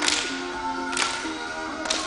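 Upbeat dance music playing, cut by three sharp, whip-like cracks about a second apart.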